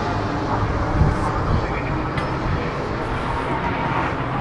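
Steady outdoor rumble and hiss, a continuous low drone with no distinct events.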